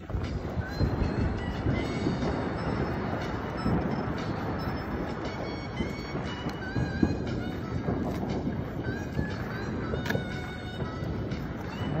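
A dense din of New Year's fireworks and firecrackers going off all around: many overlapping pops and crackles, with a sharper bang about seven seconds in and another near ten seconds.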